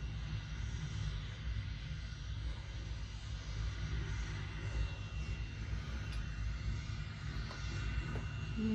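Steady low rumble through a TV speaker with a faint steady high whine: the live broadcast sound of Starship SN10's single Raptor engine still firing.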